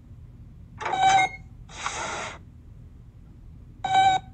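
Cartoon robot's electronic beeping voice: a short beep about a second in and another near the end, with a brief hiss just after the first beep.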